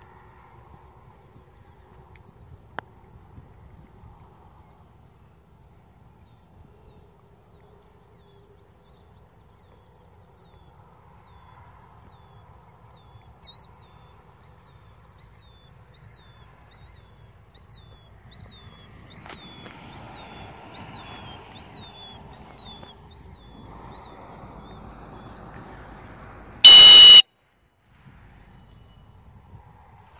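One short, very loud blast on a dog-training whistle near the end, the sit or stop signal to a retriever working a blind retrieve. Before it, a bird repeats a short falling chirp about once a second over faint outdoor background.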